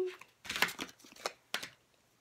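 Playing cards being handled and laid down on a table: several short papery rustles, about four in under two seconds.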